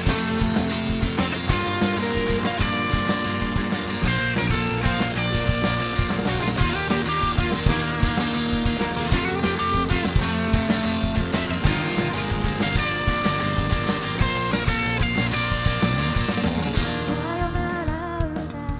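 Live rock band playing: electric guitars over a drum kit keeping a steady, busy beat.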